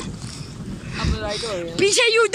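Pedal boat moving across a lake: water churning and splashing around the hull and paddle wheel, with wind buffeting the microphone. A man's voice speaks over it from about a second in.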